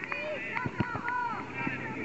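Several high voices shouting and calling over one another, the players and spectators of a youth football game, with a couple of short knocks about three-quarters of a second in.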